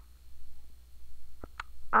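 A quiet pause: faint room tone with two tiny, brief clicks about a second and a half in.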